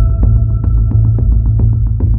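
Background music: a deep, throbbing bass drone under a steady high tone, with a fast ticking pulse of about six ticks a second.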